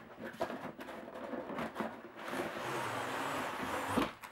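Cardboard packaging handled and slid apart: light rustles and taps, then from about halfway a steady sliding scrape as the inner cardboard tray is drawn out of the box sleeve, ending in a sharp click.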